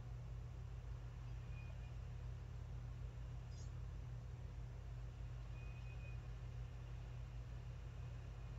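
Quiet room tone with a steady low hum, and one faint click about three and a half seconds in.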